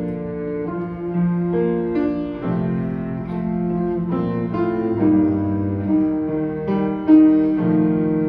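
Cello and piano playing a slow instrumental passage, the bowed cello holding notes that change about every second.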